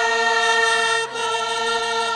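Bulgarian folk choir singing, the voices holding one long note together with a brief break about halfway.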